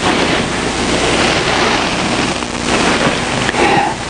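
Loud, steady rushing noise like static, filling the pause, with a faint low hum beneath it.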